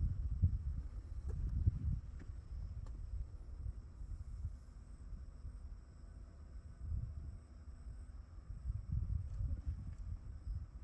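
Wind buffeting the microphone outdoors: an uneven low rumble that comes and goes in gusts, with a faint steady high-pitched hum behind it.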